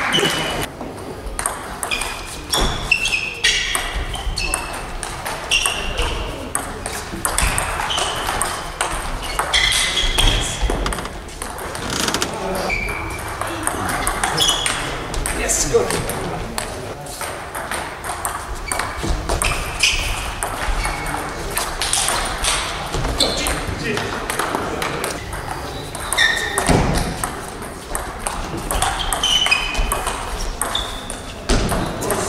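Table tennis balls being struck, sharp clicks and short high pings off bats and table, coming in quick runs with pauses between rallies. Voices can be heard in the background.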